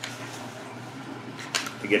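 Norinco T97 bullpup rifle being handled during reassembly: a sharp click about one and a half seconds in, as the trigger is pulled to let the part slide past, over a faint steady low hum.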